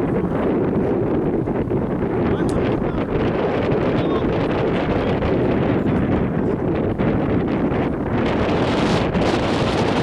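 Steady wind noise on the microphone, a dense low rumble throughout.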